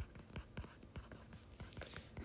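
Stylus writing on a tablet screen: faint, irregular light ticks and scrapes of the pen tip as a chemical formula is handwritten.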